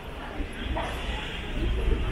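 City street ambience: passers-by talking over a low, steady rumble, with a short bark-like yelp about three quarters of a second in.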